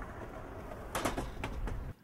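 Street ambience outside a shop: a steady low traffic rumble, with a few short sharp sounds about a second in and again halfway through.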